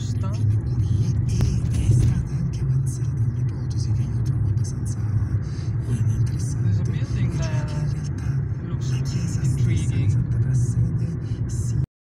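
A car's engine and tyre noise as heard from inside the cabin while driving at steady town speed, a constant low rumble.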